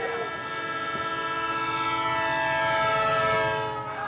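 Train horn sounding one long blast that grows louder and sinks slightly in pitch, stopping just before the end.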